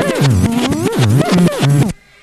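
Jungle / drum and bass record played loud on a club sound system: fast breakbeat drums over a bass line that slides up and down in pitch. It cuts off suddenly near the end.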